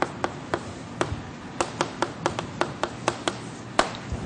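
Chalk striking and tapping against a blackboard as formula symbols are written: a quick, irregular series of about fifteen sharp taps.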